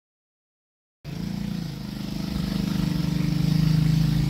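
An engine running steadily with a low hum, starting suddenly about a second in and growing slightly louder.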